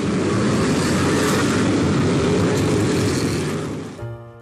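A pack of figure-eight race cars running together, a dense steady din of many engines whose pitches wander up and down as they lift and accelerate. It eases off near the end.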